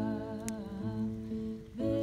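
Women singing sustained, hummed notes between lines of a song, with an acoustic guitar accompanying. The singing drops away briefly near the end before the next phrase starts.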